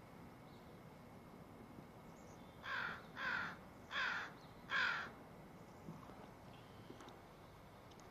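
A crow cawing four times in quick succession, starting about three seconds in, the last caw the loudest.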